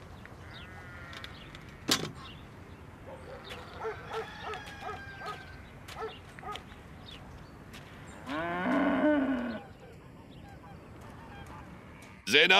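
Farmyard animals: a series of short honking calls a few seconds in, then one long, louder lowing from yoked cattle about eight seconds in, with a few sharp knocks.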